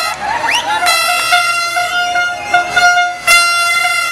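Plastic toy trumpets blown in long, steady, high-pitched blasts, nearly without a break. A crowd's voices shout over them, heard most plainly in a short gap just after the start.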